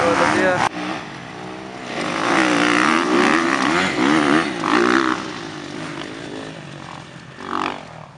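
Motocross dirt bike engine revving up and down as it rides past, its pitch rising and falling repeatedly. It is loudest in the middle and fades away near the end.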